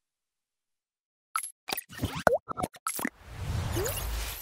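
Silent for about the first second, then a quick run of sound-effect pops and clicks with a swooping boing. A rising whoosh swells up near the end. These are the sound effects of an animated channel-logo sting.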